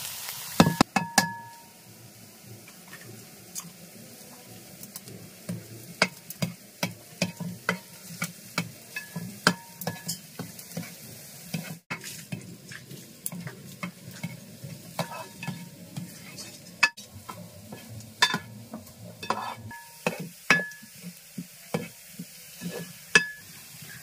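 A spoon stirring and scraping chopped ginger frying in oil in a wide metal pan, with repeated clinks against the pan that ring briefly, over a low sizzle.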